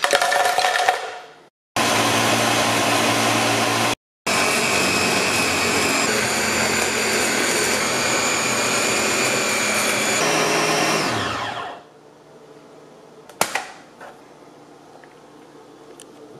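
Ninja countertop blender motor running at full speed, crushing ice with frozen-dessert ingredients into a thick ice cream. The sound is cut off abruptly twice by edits. Near the end the motor spins down with a falling pitch, followed shortly by a single sharp click.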